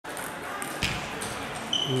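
Table tennis balls clicking in a sports hall, with one louder knock a little under a second in. Near the end a public-address announcement begins over a steady high tone.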